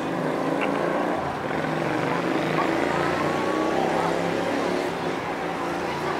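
City street traffic: vehicle engines running and passing, a steady mix of engine hum with no sudden sounds.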